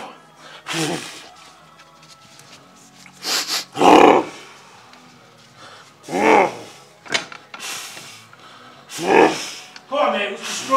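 A strongman psyching himself up at the deadlift bar before a near-maximal pull, with loud roars or yells every two to three seconds and sharp, hissing forced breaths between them.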